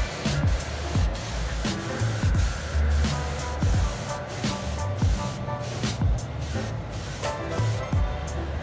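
Compressed-air paint spray gun hissing as it sprays a coat onto a car bodykit panel, the hiss thinning in the second half. Background music with a steady beat plays over it.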